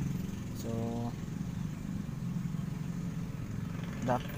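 A motor running with a steady low hum throughout.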